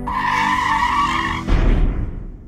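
A loud screech starts suddenly and lasts about a second and a half, then gives way to a sudden deep crash that fades out, in a skid-like sound effect that ends a hip hop track.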